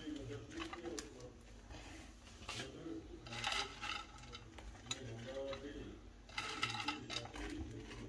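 Light clinks and handling noises of a plate and glass baking dish as fries are laid onto the food, with a few sharper clicks and faint voices in the background.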